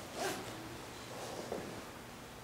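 A man's short, sharp breath at a lectern microphone, followed by faint rustling and a light tap about a second and a half in.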